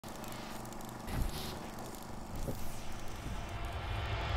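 Logo-reveal sound effects: a noisy rush with a hit about a second in, then a low rumble building toward the end.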